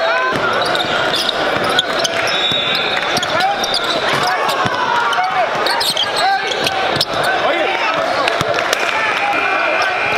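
Live basketball game sound in a gym: many overlapping voices of players and spectators calling and chattering, with a basketball bouncing on the hardwood floor and sharp knocks about two seconds in and again about seven seconds in.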